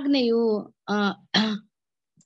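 A voice reading aloud in three short bursts in the first second and a half, then a silent pause.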